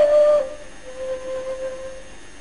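A solo melodic line with no accompaniment. A high note is loud for about half a second, then slides down in pitch and is held softly.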